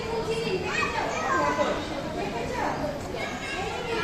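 Young children playing and vocalising, with a steady hubbub of other voices, children's and adults', mixed together.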